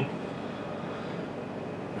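Steady background noise, an even hiss with no distinct events: room tone.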